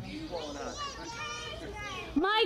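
Several children's voices chattering and calling out over one another in the background, with no clear words.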